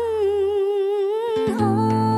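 A woman singing a long, wordless held note with vibrato in a Vietnamese folk-style ballad. About a second and a half in, the note bends and plucked acoustic guitar notes come in under it.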